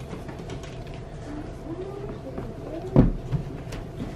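Indistinct background chatter of young children, with a sharp knock about three seconds in and a lighter one just after.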